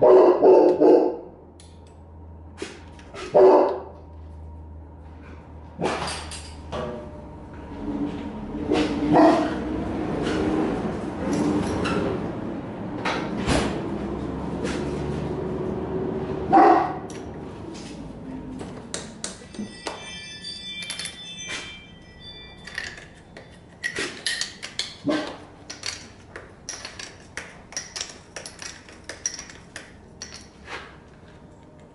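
A dog barking a few times, loudest right at the start, then a run of short metallic clicks and clinks of hand tools near the end.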